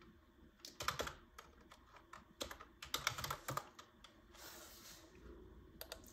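Faint typing on a desktop computer keyboard: a quick run of keystrokes about a second in, then a longer run between about two and a half and three and a half seconds in.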